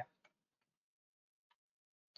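Near silence in a pause between spoken sentences, with a single faint click about one and a half seconds in.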